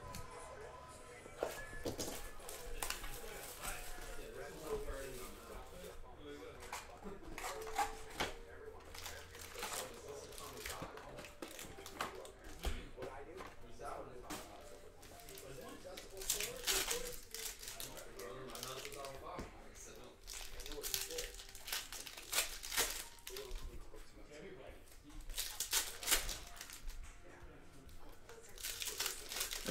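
Plastic wrapping and foil trading-card packs crinkling and tearing as a hobby box is opened and its packs are handled and torn open, in a run of short irregular rustles.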